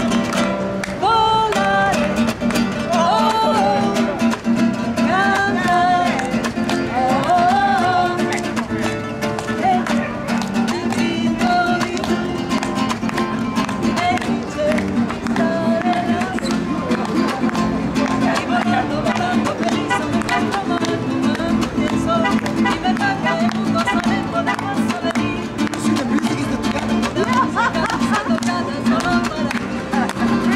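Nylon-string classical guitar strummed in a fast flamenco-rumba rhythm. A voice sings over it for roughly the first ten seconds.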